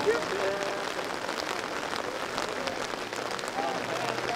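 Steady rain falling on umbrellas, a continuous hiss full of small drop ticks, with faint voices of people talking.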